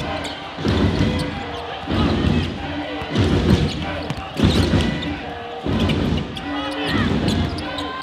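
Game sound from a basketball court: a ball bouncing on the floor about once a second, with sneakers squeaking and arena crowd noise.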